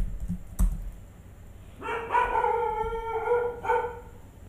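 A few keyboard clicks, then about two seconds in a high-pitched, drawn-out call begins. It holds one steady pitch, breaks briefly in the middle, and resumes until just before the end.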